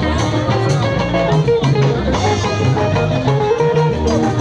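Live band music: plucked guitar lines over bass notes and a steady drum beat.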